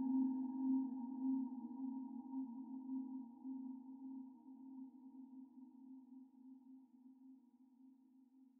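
Ambient background music: one sustained, slightly wavering low tone with fainter higher overtones, slowly fading away.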